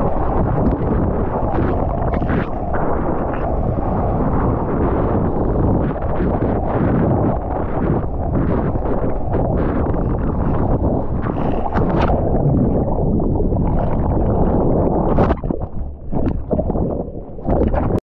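Ocean water rushing and splashing over a surfer's action camera while catching a wave, with wind buffeting the microphone. Near the end the sound dips and wavers as the camera is churned in whitewater and goes under.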